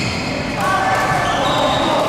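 Badminton hall sounds: court shoes squeaking on the sports floor with voices echoing around the hall. A flat, pitched squeal starts about half a second in and holds for over a second.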